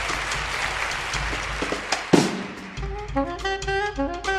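High school jazz big band playing live. A dense, noisy wash of sound gives way to a sharp accent about two seconds in, and after a brief dip a saxophone line of clear separate notes begins near the end.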